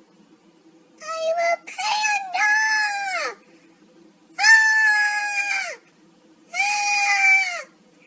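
A girl's voice, pitch-raised by a Snapchat voice-changer filter, making a series of long wordless high-pitched notes starting about a second in, each sliding down in pitch at its end.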